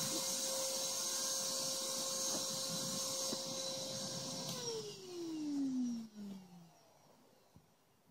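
Shop-vac-style electric blower running with a steady whine and hiss, then switched off about four and a half seconds in; its whine falls in pitch as it winds down over about two seconds.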